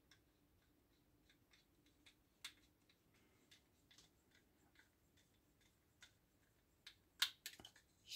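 Faint, scattered clicks of a small screwdriver turning a screw into a red plastic model part, with a few louder plastic clicks near the end.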